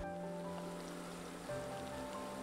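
Sliced shallots, garlic, ginger, curry leaves and whole spices sizzling softly in hot oil, a steady faint hiss. Soft background music of held notes runs underneath, changing about halfway through.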